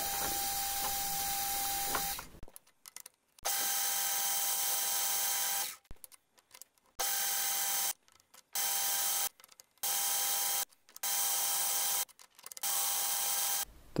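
Milling machine spindle spinning a cup grinding wheel that grinds the flats of a high-speed steel hex broach bit. A steady running sound in several short stretches, each starting and stopping abruptly.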